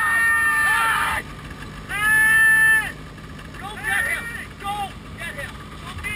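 People shouting in long, high-pitched held calls: one at the start, a second and loudest one about two seconds in, then several shorter calls, heard over a steady rush of wind noise.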